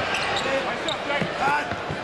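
A basketball dribbled on a hardwood court, a few bounces heard over voices in the background.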